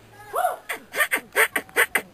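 Human beatboxing into a cupped hand: a quick, steady beat of mouth-made kick and hi-hat sounds, about four to five hits a second, starting about half a second in.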